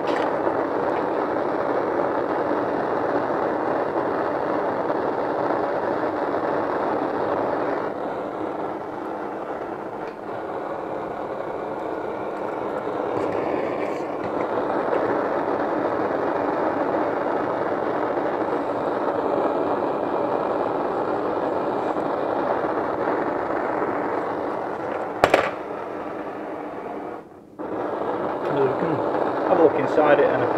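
Gas blowtorch flame running steadily as it heats an aluminium housing to flow solder into a bushing's threads. There is a sharp click near the end, and just after it the sound drops out for a moment before the flame resumes.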